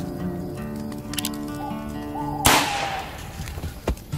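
A single gunshot about two and a half seconds in, sharp and loud with a trailing ring, over background music of long held notes. A short knock follows near the end.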